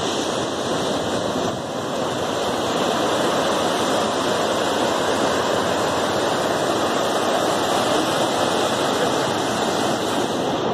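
Sea surf washing in over a rocky shore, a steady rushing noise with no let-up.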